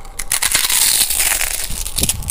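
A loud crackling, hissing noise that starts suddenly and is thick with rapid clicks.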